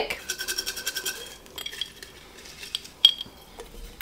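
An automatic pet feeder going off: a steady whir for about the first second and a half, then scattered clinks, the sharpest about three seconds in.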